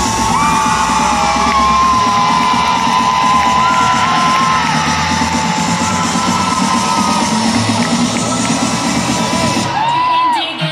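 Live concert music played loud over an arena sound system, a held melody line gliding between notes, with a large crowd cheering and whooping. The deep bass drops out about two seconds in.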